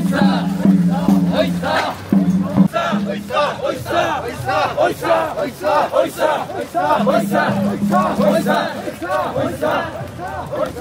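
Mikoshi bearers, many men's voices, shouting a rhythmic chant together as they carry portable shrines. A low steady drone sounds over the first two seconds or so and again about seven seconds in.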